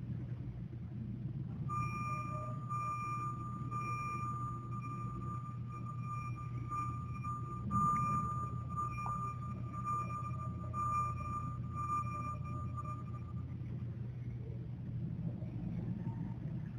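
A high, steady electronic tone, wavering in strength, starts about two seconds in and stops a couple of seconds before the end, over a constant low hum.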